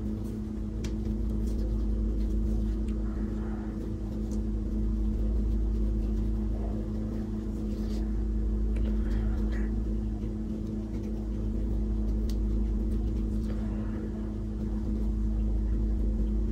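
A steady low hum with a couple of fixed tones, swelling and easing gently every few seconds, with a few faint ticks over it.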